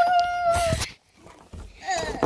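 A child's high-pitched held squeal, one steady note lasting under a second, followed after a short pause by a brief falling cry near the end.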